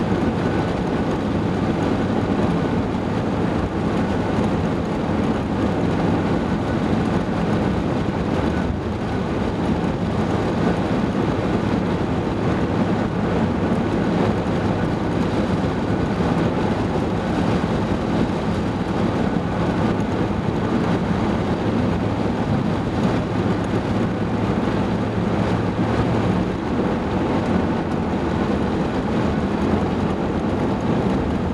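Car driving at a steady speed on a paved road: a constant engine hum and tyre noise.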